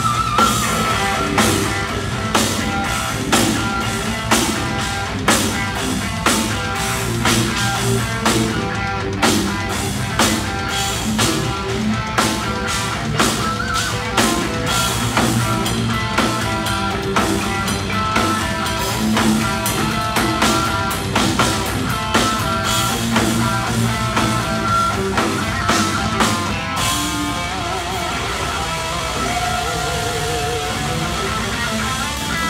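Rock band playing live: electric guitars, bass and a drum kit keeping a steady beat. The drums stop about three seconds before the end, leaving a held guitar note ringing.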